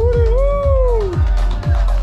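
Electronic dance track with a steady kick drum about twice a second, and a woman's voice through a microphone singing one sliding note that rises and falls, held for about a second near the start.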